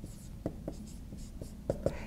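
Dry-erase marker writing on a whiteboard: a few faint, short strokes and taps as figures are written.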